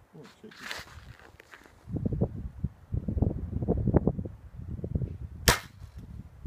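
Excalibur recurve crossbow firing a bolt: a single sharp snap of the string and limbs near the end. Low rumbling noise on the microphone comes before it.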